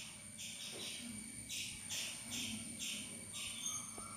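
Repeated short, high chirps, about two a second, over a faint steady high-pitched whine.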